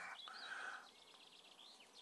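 Quiet outdoor background with a few faint, short bird chirps; a soft hiss dies away in the first second.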